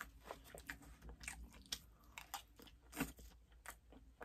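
A person chewing food, with faint, irregular clicks and crunches. The loudest comes about three seconds in.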